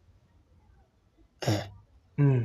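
A man's single short throat-clearing "eh", falling in pitch, about a second and a half in after a quiet pause.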